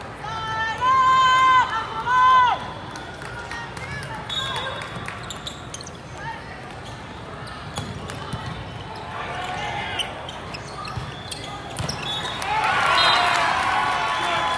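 Indoor volleyball match in a large echoing hall. About a second in come two loud, held, high-pitched calls, each dropping in pitch at its end. Then scattered ball hits and knocks during the rally, and near the end a burst of many overlapping voices shouting and cheering.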